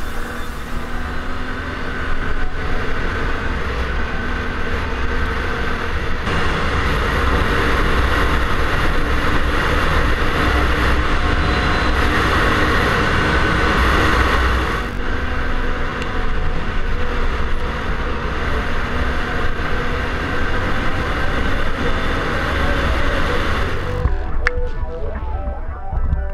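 Can-Am Renegade ATV running under way over a dirt forest track, its engine mixed with heavy wind rumble on the helmet camera's microphone. The sound shifts abruptly about six seconds in and again about fifteen seconds in, louder in between.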